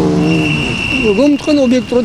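A man's voice speaking: a drawn-out word falls in pitch at the start, then after a brief pause he speaks again. A steady high-pitched whine sounds behind the voice from a moment in.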